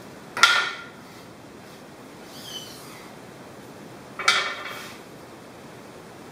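Two sharp knocks with brief metallic ringing, about four seconds apart: a wooden rod knocking against the aluminium extrusion of a screen-stretching jig.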